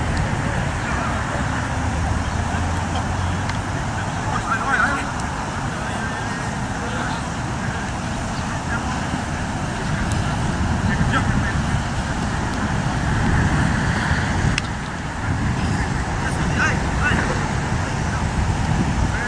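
Steady low outdoor rumble and hiss, with a few short faint calls from rugby players, about five seconds in and again near the end.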